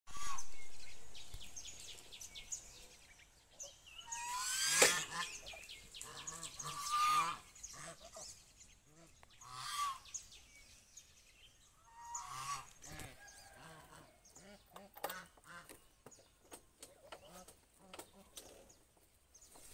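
A flock of domestic geese honking, several separate loud calls spread through the stretch, the loudest about five seconds in.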